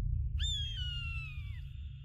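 A deep low rumble dying away. About half a second in, a single long high cry, like an animal's, slides slowly down in pitch over about a second. A faint steady high tone lingers behind it.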